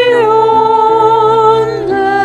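A woman singing through a microphone with grand piano accompaniment: she holds one long note for about a second and a half, then moves to a new note near the end.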